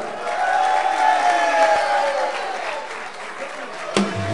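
Audience applauding, with a faint held tone that fades away about halfway through.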